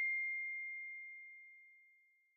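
The tail of a single high, pure ding from a logo chime, ringing on one steady pitch and fading away, gone about a second and a half in.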